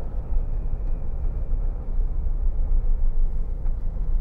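Cabin noise of a 2009 Jeep Wrangler 2.8 CRD turbodiesel on the move: a steady low engine drone mixed with road and wind noise.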